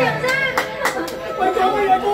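Voices talking over one another, with the karaoke backing music dying away in the first part.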